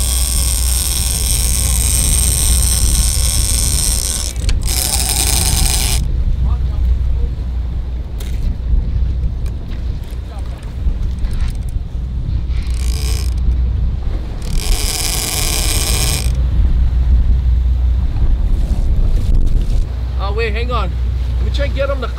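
Steady low rumble of a sportfishing boat's engine at sea, broken by bursts of high-pitched mechanical buzzing: one for about the first four seconds, then shorter ones about five, thirteen and fifteen seconds in.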